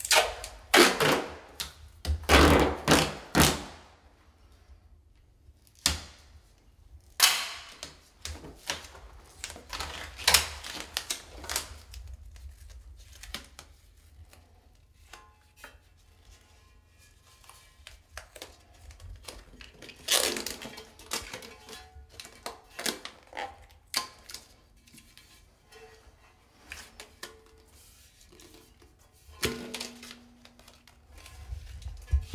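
Clear packing tape being pulled off the roll in several loud rips, in a cluster over the first dozen seconds and again about twenty seconds in, with lighter rubbing and knocks as the strips are smoothed onto the sink bowl.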